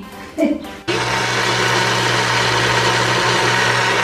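Personal bullet-style blender motor starting about a second in and running steadily at one even pitch, blending a red chili and garlic marinade.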